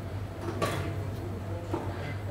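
Espresso Book Machine's binding mechanism at work, clamping and turning the book block for gluing: a steady machine hum, with a short mechanical sliding noise about half a second in and a weaker one near the end.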